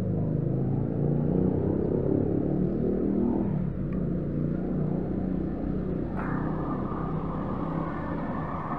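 A motor vehicle engine running with a low rumble. Its note wavers for the first few seconds and then eases, and a higher hiss joins about six seconds in.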